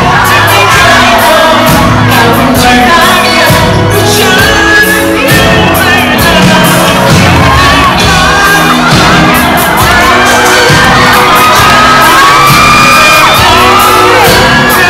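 Live pop song played loud through a concert PA: a male lead vocalist singing over a full band with electric guitar.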